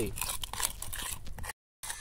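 A spoon stirring and scraping thick two-part adhesive paste inside a small metal can, giving irregular scraping clicks; the sound cuts off abruptly about one and a half seconds in.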